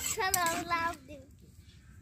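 A high-pitched voice, like a child's, sings or calls out briefly for about a second, just after a short click.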